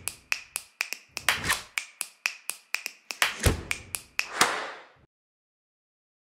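A quick, uneven run of sharp clicks and taps, with a deep thud about three and a half seconds in; it all cuts off suddenly about five seconds in.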